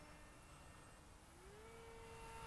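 Faint whine of a small electric RC plane's motor flying far off, its pitch gliding up about one and a half seconds in as the motor speeds up.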